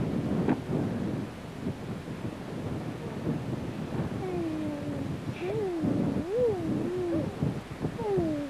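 Low rumble of wind buffeting an old camcorder's microphone, with children's voices calling out in long, wavering, rising-and-falling cries about halfway through.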